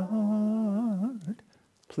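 A man's voice humming a held, wordless note of a prayer melody that wavers up and down at the close of the tune. It ends just over a second in.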